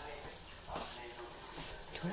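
Quiet room with a faint voice in the background.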